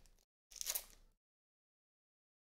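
Crinkling of a trading-card pack's wrapper being torn open and handled, in two short bursts within the first second.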